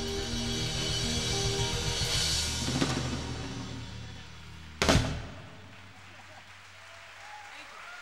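Live jazz-pop band with drum kit ending a tune: sustained chords and drums fade out over the first few seconds, then the full band strikes one loud final hit about five seconds in that rings briefly. Light audience applause follows.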